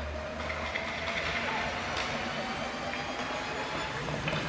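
Hockey skate blades scraping and gliding on rink ice, a steady hiss in an echoing hall.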